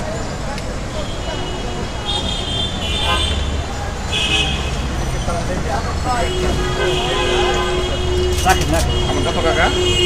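Busy city street traffic with background chatter of voices and vehicle horns sounding: one at about two seconds, a short one a little after four seconds, and a long held one from past the middle to the end.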